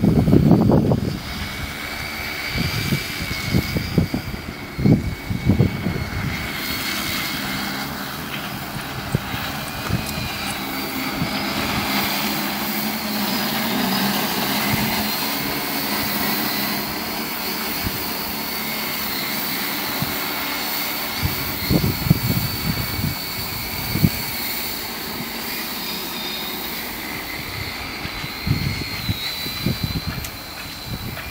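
Large agricultural spray drone in flight, its rotors giving a steady drone with a thin high motor whine. Irregular low rumbles break in near the start, a few seconds in, and again about two-thirds of the way through.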